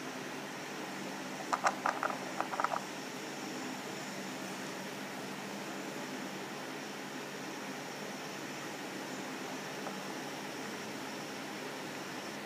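Steady low hum and hiss of room noise, broken about a second and a half in by a short run of sharp clicks lasting about a second.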